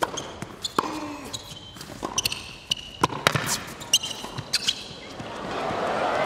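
Tennis rally on an indoor hard court: a series of sharp racket-on-ball strikes and ball bounces, with short high shoe squeaks between them. Crowd noise rises in the last second or so as the rally goes on.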